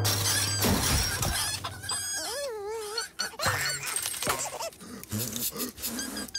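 Cartoon sound effects and wordless character voices: squeaks and squeals, a warbling, wavering squeal about two seconds in, and short clattering hits.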